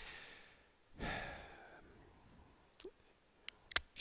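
Faint sigh-like exhale of breath about a second in, fading out within a second, followed by a few faint mouth clicks.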